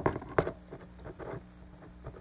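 Plastic parts of a Hunt for the Decepticons Breacher Transformers figure clicking as they are moved by hand: a sharp click at the start, another about half a second in, then a run of lighter ticks.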